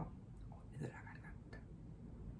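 A woman's faint whisper or breathy voice, brief and soft, just before a second in, over quiet room tone.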